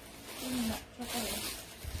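Rustling of fabric and hangers as a long dress is pulled off a clothes rack and handled, with a short low murmur from a woman's voice about half a second in.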